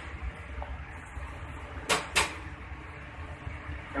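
Two sharp knocks about a third of a second apart near the middle, from kitchen items being handled at a stainless-steel counter. A steady low hum runs underneath.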